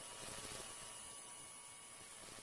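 Faint steady hum with an even hiss, fading slightly near the end.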